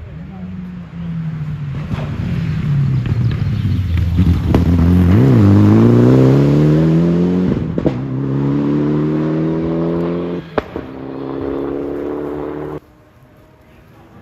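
Rally car engine going through a stage. The note falls over the first few seconds, then climbs hard under acceleration through two upshifts, with a sharp crack at each gearchange. The sound cuts off abruptly near the end.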